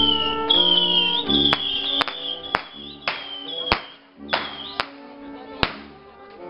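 Street brass band playing: sousaphone bass notes under trumpet melody phrases, with the playing thinning out in the middle. Several sharp cracks or clicks cut through the music.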